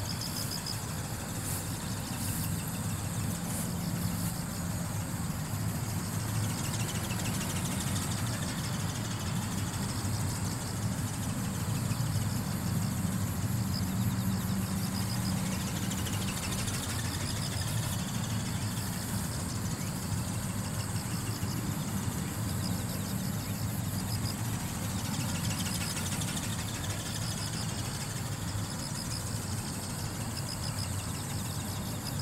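Steady, wavering drone of a small robot ornithopter in flight: a brushless electric motor and gear train driving its flapping wings, with slow rising and falling sweeps as it circles overhead.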